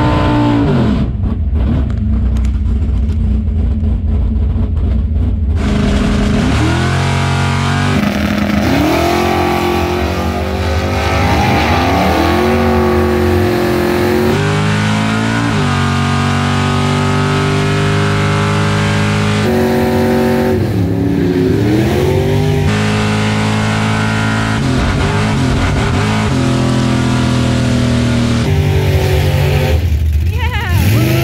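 Drag racing car's engine held at steady revs on the starting line, then launching at full throttle about six seconds in and climbing in pitch through several gear changes. It holds high revs for a few seconds, then falls in pitch as the driver lifts off and the car slows.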